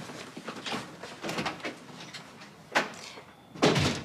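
Footsteps and a back door being opened and shut: a few light knocks, a sharp click about three seconds in, and a heavier thud near the end as the door closes.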